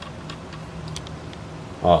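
A few faint ticks as the screw-down crown of a stainless steel Invicta chronograph watch is unscrewed by hand, over a steady low hum.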